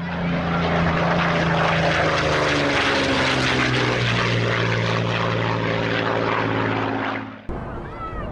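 Propeller airplane's piston engine running loudly and steadily, its pitch falling slightly in the middle as it passes; the sound cuts off suddenly near the end.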